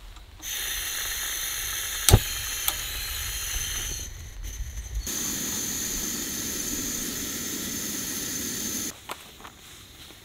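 Portable remote-canister gas camping stove: gas hissing steadily from the burner, with a single sharp click about two seconds in. From about five seconds the burner runs lit, a steady hiss with a low flame rumble, cutting off abruptly near the end.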